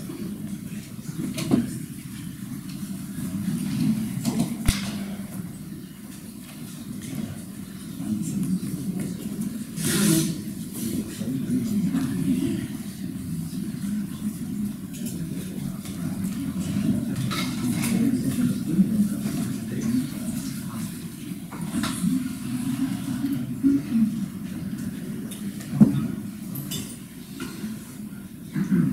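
Indistinct murmur of voices talking quietly in the room, with a few scattered knocks and clicks.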